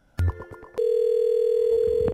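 Telephone line tones: a click and a brief cluster of tones, then one steady tone held for over a second, the sound of a call going through on the phone line just before it is answered.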